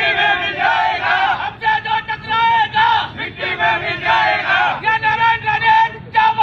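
A group of men chanting protest slogans in unison, loud shouted phrases repeated in a rhythm with brief breaks between them.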